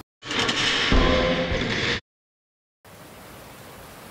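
A logo sting sound effect: a loud burst of hissing noise with a low hit about a second in, which cuts off suddenly. After a short silence, the steady rush of a waterfall comes in.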